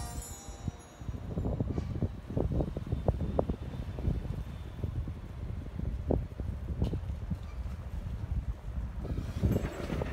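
Wind rumbling on the microphone of a handheld camera carried outdoors, with irregular thumps from handling and walking. A fading chime tone ends in the first second.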